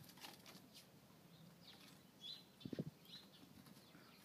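Near silence in the cold air, with a few faint, short bird chirps here and there and a brief run of soft low thumps a little past halfway.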